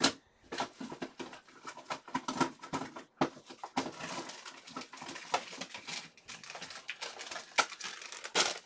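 Irregular light clicks, taps and rustling, the sound of things being handled close to the microphone.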